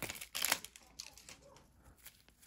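Trading cards being slid and flipped against one another in nitrile-gloved hands: a few soft scrapes in the first half second, then faint ticks.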